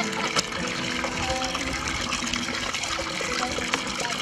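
Water pouring steadily from a standpipe tap into a plastic basin as it fills, with background music underneath.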